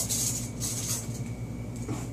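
Steady low hum of the room's ventilation, with a few brief hissy rustles in the first second.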